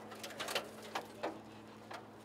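A few faint, scattered clicks and rustles of burnt car wreckage being handled by gloved hands, over a low steady hum.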